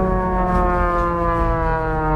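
Red Bull Air Race plane's six-cylinder Lycoming engine and propeller at full power going past, a loud buzzing tone whose pitch slowly falls as it passes.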